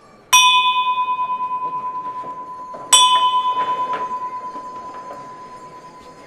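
Brass signal bell on the front of a processional throne, struck twice about two and a half seconds apart. Each strike rings out in one clear high tone that fades slowly with a wavering pulse, the last call to the throne's bearers at this door.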